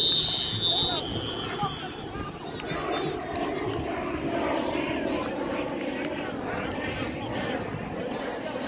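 A referee's whistle blows once at the start, a high, slightly wavering tone about a second long. Then comes the murmur of a crowd of spectators talking around the field.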